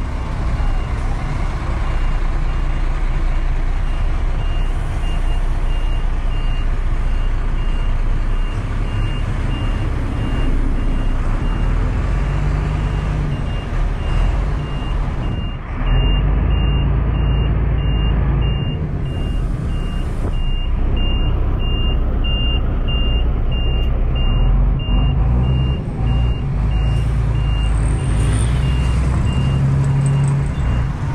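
A bus's reversing alarm beeping steadily about twice a second over the low, steady running of a large bus engine. The beeps stop near the end.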